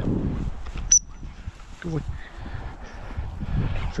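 A single short, high pip on a gundog training whistle about a second in, the signal for the spaniel to turn.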